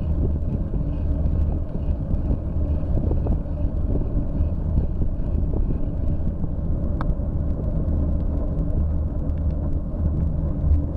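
Steady low rumble of wind buffeting a handlebar-mounted bike camera's microphone together with tyre noise on damp asphalt as the bicycle rides along. Scattered small clicks, and one brief high chirp about seven seconds in.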